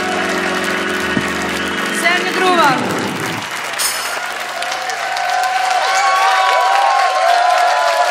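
A live band's closing held chord slides steeply down in pitch and cuts off about three and a half seconds in, followed by studio audience applause with cheering and whoops.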